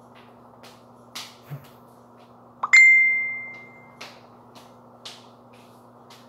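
A single bell-like ding about two and a half seconds in, one high ringing note that fades away over about a second. Around it are a few faint knocks, over a steady low hum.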